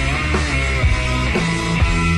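Rock music: a distorted electric guitar playing a low riff over a steady drum beat.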